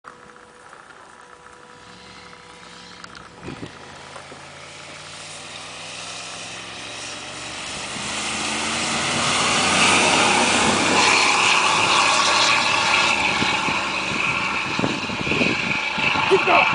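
Engines of two 4x4s, a Dodge Ram pickup and a Mitsubishi Pajero, running hard under acceleration as the trucks race across a field and approach. The engine pitch rises and the sound grows steadily louder, loudest about ten to thirteen seconds in as they pass close by, then eases off slightly.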